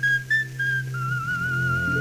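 Coloratura soprano voice singing very high in an old recording: a few short notes stepping down from around A6, then a lower note held with vibrato from about halfway, over a soft accompaniment.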